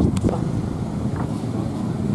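Low rumble of wind on the microphone with faint voices in the background, and one short sharp click just after the start.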